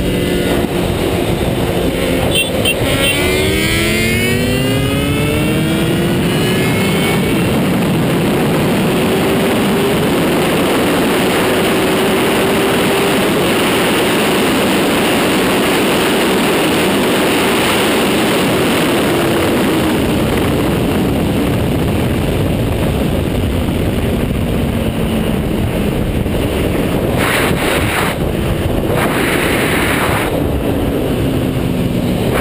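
Honda CBR1000RR Fireblade's inline-four engine pulling hard, its pitch climbing steadily for about four seconds a few seconds in, then held at high speed under a loud, steady rush of wind on the bike-mounted camera.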